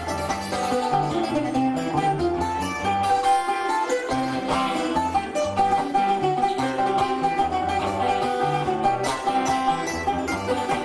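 Acoustic guitar and other plucked strings playing an instrumental passage of Cuban punto guajiro between sung verses, over a steady repeating bass line.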